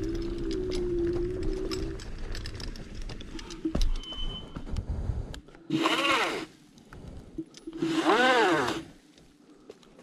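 KugooKirin G3 electric scooter riding over a dirt trail: a steady motor whine over the rumble of the tyres, which fades about two seconds in. Later come two short bursts, each about a second long, in which the motor's whine climbs and falls in pitch amid a loud rushing noise.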